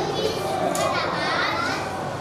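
Many young children chattering at once, their voices overlapping into a steady babble.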